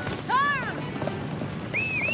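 A cartoon cattle stampede: a steady clatter of running hooves under background music, with a short high arched call about a third of a second in and another short rising call near the end.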